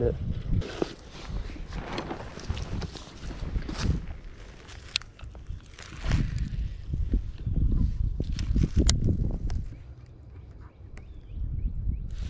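Wind buffeting a body-worn GoPro microphone, with footsteps and rustling in grass and a few sharp clicks from handling a fishing rod.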